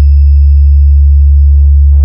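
A loud, steady deep bass sine tone, the sub-bass 'vibration' test tone of a DJ sound-check mix, held without change. About one and a half seconds in, short noisy drum hits start pulsing over it, twice before the end.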